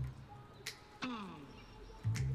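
A brief click, then about a second in a short sound that slides steeply down in pitch and fades.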